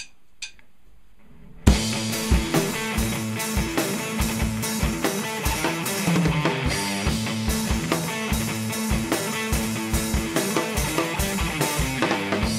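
Two sharp clicks, then about a second and a half in a Yamaha drum kit and an electric guitar start together on a loud rock riff, the kick drum hitting in a steady driving pattern.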